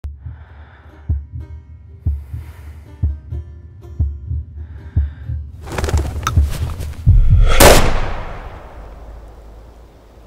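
Produced intro music and sound effects: a low thump about once a second like a heartbeat, a swelling rise, then a loud hit and whoosh about seven seconds in that fades away.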